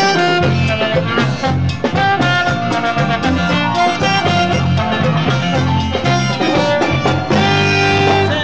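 Live cumbia orchestra playing an instrumental passage, brass leading over a steady bass and percussion beat.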